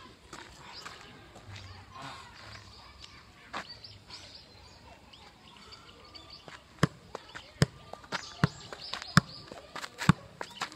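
Soccer ball being juggled with the outside of the left foot: five sharp taps of foot on ball, a little more than one a second, starting about seven seconds in.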